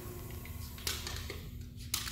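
Engine block leak tester's shuttle carrying a cast-iron V8 block out, with a steady low machine hum and a sharp mechanical click about a second in and another just before the end.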